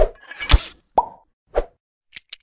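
Sound effects of an animated logo outro: a quick series of short pops and hits, about four in two seconds, one of them trailing off in a brief tone.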